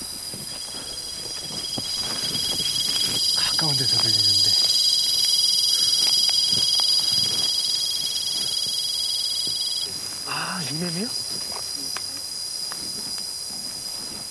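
Cicadas singing in chorus in the trees: a steady, high-pitched buzz that swells over the first few seconds and then eases off, with one of its tones stopping about ten seconds in.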